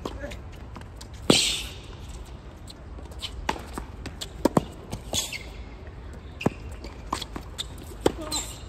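Tennis rally: a ball struck by rackets and bouncing on the court, a string of sharp knocks at uneven spacing. The loudest, about a second in, is a hit near the microphone followed by a short hiss; the other knocks are fainter and more distant.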